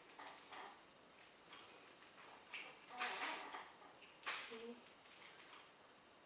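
Medium-hold aerosol hairspray sprayed onto the hair in two short hissing bursts, about three and four seconds in.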